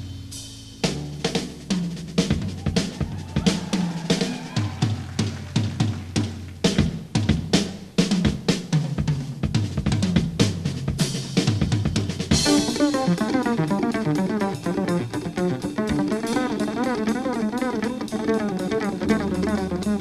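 Drum kit played solo: fast, irregular snare, tom and bass-drum strokes with cymbal crashes. About twelve seconds in, pitched instruments and a bass line come back in, and the drums keep time under them.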